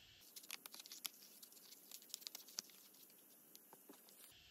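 Scissors cutting out a small paper logo: faint, irregular snips and paper crinkles, busiest in the first two seconds.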